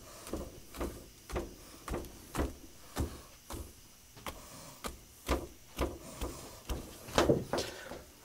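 A string of light knocks and clatters, irregularly spaced at about one or two a second, as things are handled and set down on a workbench.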